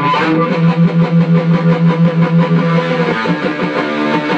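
Live band playing in a small room, led by an electric guitar through an amplifier. Through the middle, a low note pulses about four times a second.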